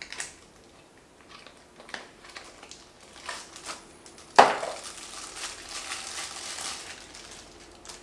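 Packaging being handled on a table: soft scattered taps and rustles from a cardboard box, then a sharp knock about halfway through followed by a couple of seconds of plastic wrapping crinkling.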